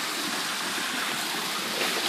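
Creek waterfall cascading over rocks: a steady, even rush of falling water.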